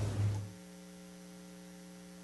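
Low electrical mains hum in the audio feed: a steady buzz of several even tones. A louder, lower hum tone stops about half a second in.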